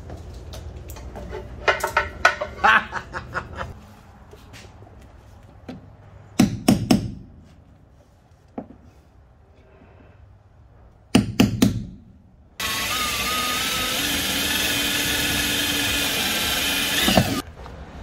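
A handheld power drill boring a pilot hole for the breather-tank mounting bolts, running with a steady whine for about five seconds in the second half before stopping suddenly. Before it come several sharp knocks of parts and tools being handled.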